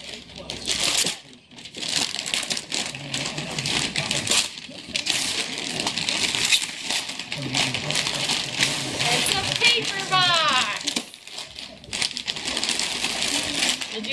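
Wrapping paper tearing and tissue paper crinkling as a gift box is unwrapped. A short, high, falling vocal sound comes in about ten seconds in.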